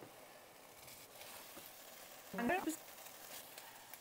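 Cubes of tofu sizzling in hot avocado oil in a frying pan preheated on high heat, a faint steady sizzle just after they go in.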